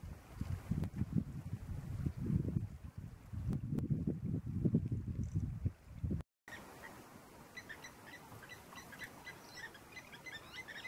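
Low, uneven rumbling for about six seconds that stops abruptly. Then faint, rapid, repeated high chirps of small birds.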